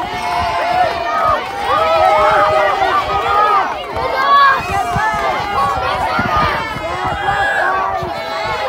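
A crowd of young children shouting excitedly all at once, many high voices overlapping.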